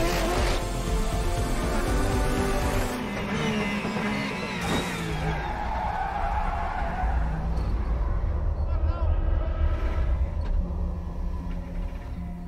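Porsche 911 RSR race car's flat-six engine running hard, its pitch climbing through the gears over the first few seconds and then falling, mixed under background music.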